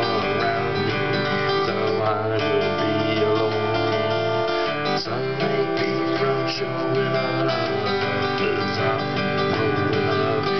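Acoustic guitar strummed in a steady rhythm: an instrumental passage between sung verses, with no singing.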